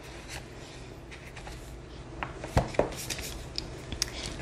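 Soft handling sounds of a softcover Moleskin notebook being slid into a leather notebook cover: faint rubbing and rustling of leather and paper, with a couple of light taps a little past halfway.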